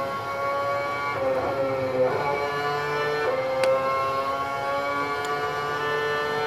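Formula One car's engine on onboard lap footage played through a lecture hall's speakers: a high, steady note that dips and climbs in pitch a few times as the car runs through a fast corner.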